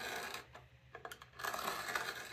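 A marking knife scoring a line into a wooden board along the blade of a square: faint, short scratching strokes near the start and again in the second half.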